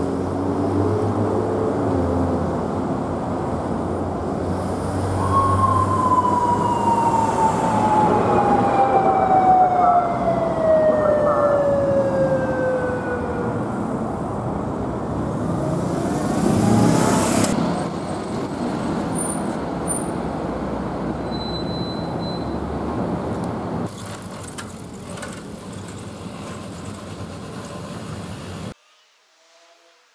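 Police motorcycle siren giving one long wail that falls steadily in pitch over about eight seconds, over busy city traffic, as the police motorcycle chases a car that ran the signal. A louder vehicle passes near the middle, and the traffic sound cuts off abruptly near the end.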